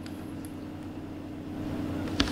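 Steady low hum of background recording noise, with a faint tick about half a second in.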